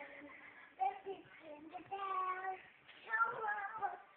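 A young child singing, with a steady held note about two seconds in and another sung phrase near the end.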